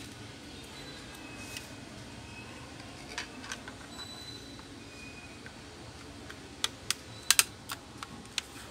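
Plastic clicks and taps from a portable Bluetooth speaker's casing and cover being handled and fitted back together: a few faint clicks, then a quick run of sharp clicks about seven seconds in, the loudest of them near the end.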